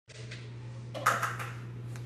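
A steady low hum with a short burst of rustling and a few light knocks about a second in.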